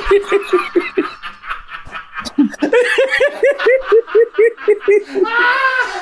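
People laughing at a joke's punchline. From about halfway through, one laugh settles into an even run of short 'ha-ha' pulses, about five a second.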